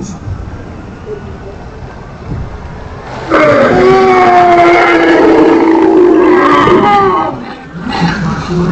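Animatronic hadrosaur's call played over the ride's speakers: one long, loud call on a few steady, slightly wavering tones, starting about three seconds in and lasting about three and a half seconds.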